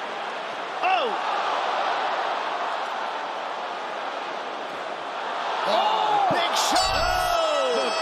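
Arena crowd noise with loud shouting voices over it, getting louder in the last few seconds; a sharp thud about a second in.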